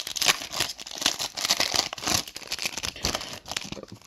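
Upper Deck Black Diamond hockey card pack's foil wrapper being torn open and crinkled by hand, an irregular crackling run of rips that tears the wrapper into pieces.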